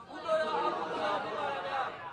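Speech only: a monk speaking in Burmese during a Dhamma sermon.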